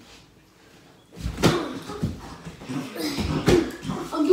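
Dull thuds and scuffling from a pillow fight: pillows swung and landing on bodies and the floor, several heavy hits starting about a second in, with brief voices between them.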